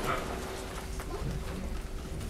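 Faint lecture-hall room sound during a break: scattered small knocks and shuffling over a steady low hum, with no clear speech.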